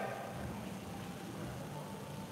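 Low, steady room noise of a boxing gym with a faint steady hum. No distinct glove impacts or footfalls stand out.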